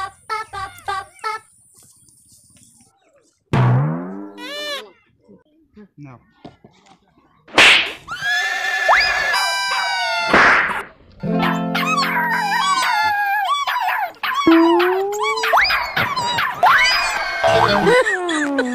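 Cartoon comedy sound effects mixed with music: a quick run of chirpy clucks at the start, a springy boing about three and a half seconds in, then from about seven and a half seconds a busy jumble of whistling, sliding tones and music.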